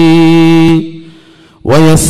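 A man's voice chanting Quranic verses in a melodic recitation: a long held note that fades out under a second in, a breath-length pause, then the voice comes back in on a rising pitch near the end.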